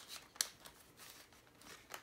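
Faint rustling and ticking as clear plastic zippered cash envelopes in a binder and dollar bills are handled, with one sharp click about half a second in.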